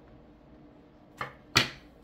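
Playing cards knocked against a wooden tabletop: a faint tap about a second in, then a sharp, louder knock near the end.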